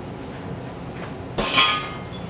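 A single thump about one and a half seconds in as a hanging heavy punching bag is struck, followed by a brief metallic clink and ring from its hanging chain.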